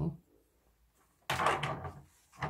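Polypropylene laundry basket being handled: a brief knock and scrape of hard plastic about a second and a half in, after a short near-silent pause.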